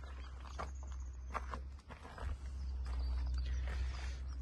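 A few soft knocks and scuffs of someone moving about and handling the phone, over a low steady rumble. The rumble grows a little louder after about two seconds.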